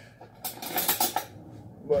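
Metal spoons clattering and clinking as one is picked out, for well under a second starting about half a second in.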